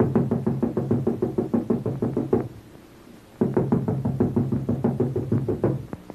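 Film score music: a fast run of evenly pulsed repeated notes, about seven a second, over a held low tone, in two phrases with a short break near the middle.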